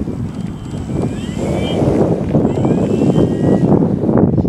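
Radio-controlled model airplane taxiing, its motor and propeller rising in pitch twice with short throttle blips. Heavy wind rumble on the microphone is louder than the motor.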